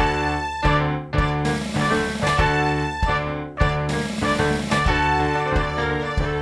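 Contemporary ensemble music in a driving, irregular-metre rhythm. Sustained pitched chords from brass, piano, marimba and strings are punctuated by low drum strokes that fall at uneven spacing.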